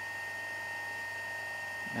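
Three-phase AC electric motor running steadily at speed after a soft start, with a steady high-pitched whine.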